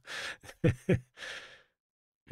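A man breathing out audibly in a sigh, with two brief voiced sounds in the middle, then a second breath out.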